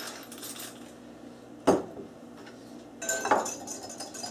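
Faint pepper-mill grinding over a glass bowl, then a single sharp knock a little under halfway through. In the last second a metal whisk starts scraping and clinking against the glass bowl.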